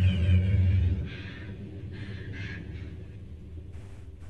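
Low rumble on a horror film's soundtrack, which drops away after about a second to a fainter background.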